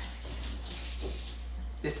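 Pot of red beans cooking under a glass lid on a portable butane burner: a low, steady, watery hiss.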